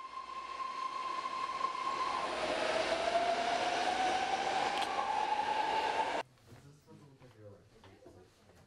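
A train passing close by: a loud, steady rush with a whine in it that rises slowly in pitch. It cuts off suddenly about six seconds in, leaving faint room sound with a few light clicks.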